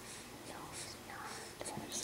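A faint whispered voice, with a few small clicks near the end.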